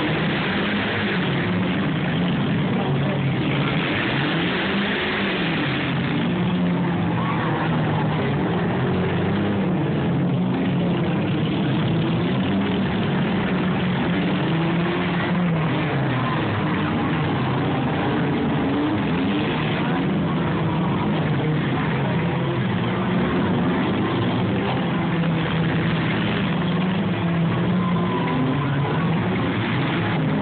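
Several demolition derby cars' engines running and revving together, their pitch rising and falling over one another, with the noise of the cars working in the arena.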